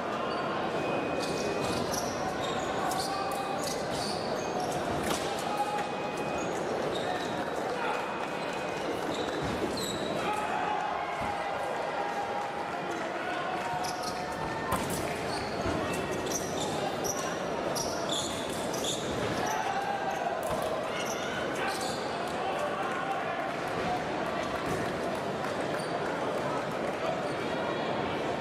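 Ambient noise of a busy fencing hall: a steady murmur of voices with frequent sharp squeaks and clicks from shoes and blades on the pistes. Short steady electronic beeps sound at intervals.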